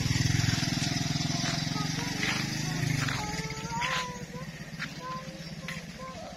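A small engine running with a steady low drone, fading away about halfway through.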